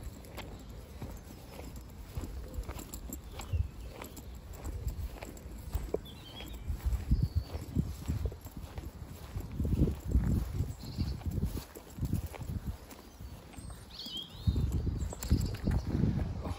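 Footsteps of someone walking along a path and onto grass, with irregular low thumps and rumbles from a hand-held camera. A few faint bird chirps.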